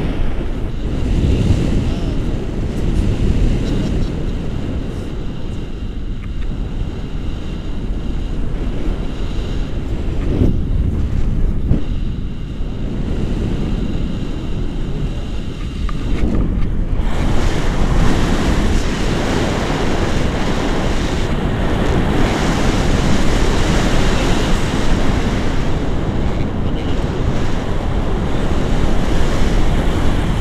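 Wind rushing over the camera microphone of a paraglider in flight, a steady low rumble that turns louder and hissier about halfway through.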